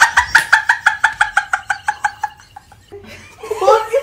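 Women laughing hard: a rapid string of high-pitched "ha-ha" bursts, about five or six a second, that trails off after about two seconds, with the laughter picking up again near the end.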